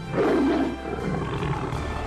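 A lion's roar, used as a sound effect, loudest in the first second, over title music that carries on after it.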